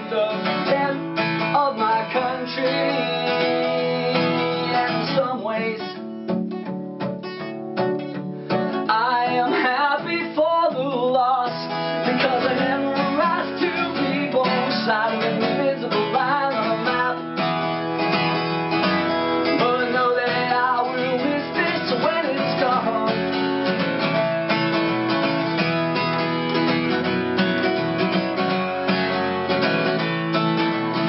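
Acoustic guitar strummed steadily in a live solo performance, chords ringing without pause.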